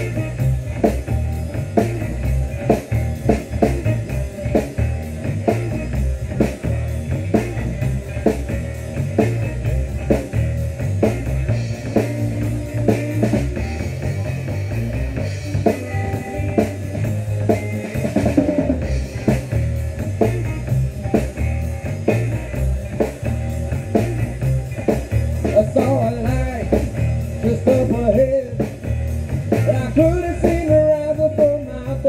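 Live rock band playing an instrumental passage: a drum kit keeping a steady beat under electric guitars, amplified through a PA.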